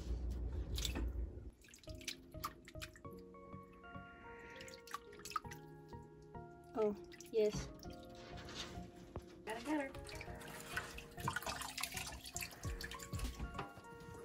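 Water sloshing and dripping in a kitchen sink as a ferret is washed by hand, under soft background music with long held notes. The splashing gets busier for the last few seconds.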